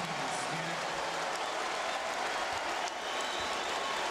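Arena crowd cheering and applauding, a steady, even wall of noise with no breaks.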